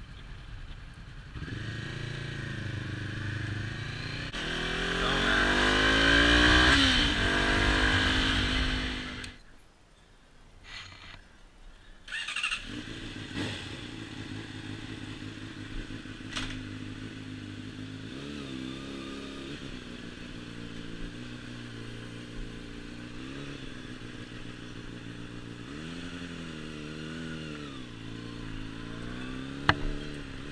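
Honda CB500F's parallel-twin accelerating hard, its pitch climbing twice and loudest about six to eight seconds in, then cut off abruptly about nine seconds in. After a few quieter seconds, a Honda CBR600RR's inline-four runs at low speed, rising and falling gently a few times.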